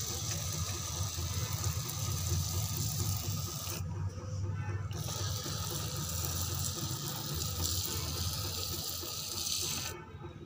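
Hand-pump pressure spray bottle misting water: a steady hiss that breaks off briefly about four seconds in, then stops at the end. A low rumble runs underneath.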